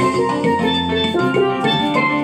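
Steelpans played solo with mallets: a melody of quick, ringing struck notes over a held low note.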